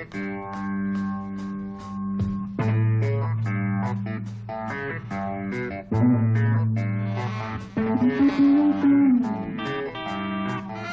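Rock band playing an instrumental passage live: sustained chords over a bass line and a steady ticking cymbal beat, with a note bent up and back down about eight seconds in.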